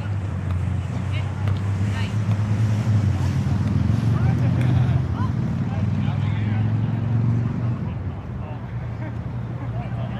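Open-air park ambience: distant voices of people at play over a strong, steady low hum that weakens about eight seconds in.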